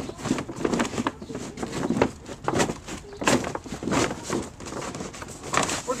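Stiff reinforced polyethylene pond liner crinkling and crackling at irregular intervals as it is pressed by hand and stepped down into the pond's corners, with a few louder crackles around the middle and near the end.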